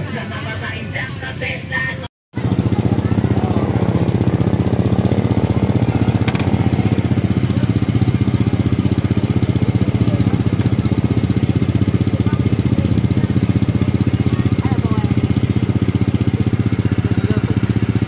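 Motorcycle engine running steadily and loudly, starting after a brief dropout about two seconds in; before it, a couple of seconds of street voices.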